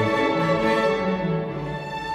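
String orchestra of violins, cellos and basses playing sustained chords over moving bass notes, growing a little quieter near the end.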